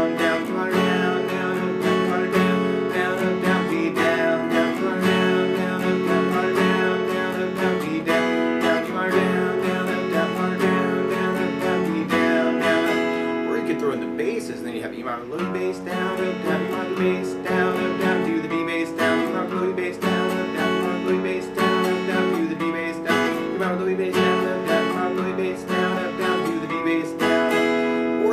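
Takamine steel-string acoustic guitar strummed in a down, down-up, down-up pattern, moving between E minor and D major chords.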